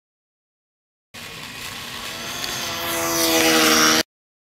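Small electric RC plane motor and propeller (Hobbyzone Champ) running, a steady buzzing whine that starts abruptly about a second in and grows louder as the plane comes closer.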